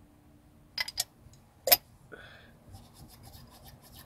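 Small metallic clicks and light scraping as a clutch hydraulic cylinder is worked by hand with a makeshift spring cut from a brake cable: three sharp clicks in the first two seconds, then faint rapid scratching.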